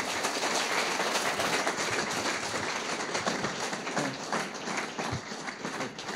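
Audience applauding: dense, steady clapping that thins to more separate claps in the last couple of seconds.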